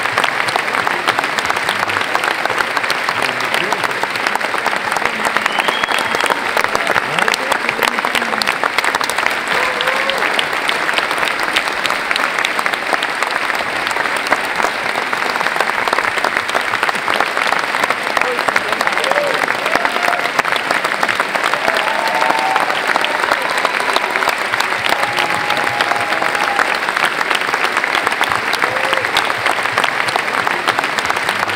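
A large audience giving a standing ovation: dense, steady clapping that never lets up, with scattered voices and cheers calling out through it.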